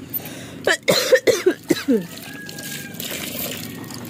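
A woman coughing in a short fit of several coughs in the first half, followed by a faint steady hiss.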